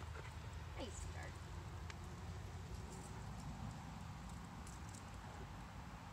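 A large dog shifting about on asphalt, its nails giving a few light clicks, over a steady low rumble.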